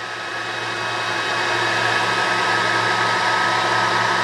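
Diode laser engraver framing a square: its stepper motors drive the head along the outline over the steady whirr of the machine's fan, the sound slowly growing louder.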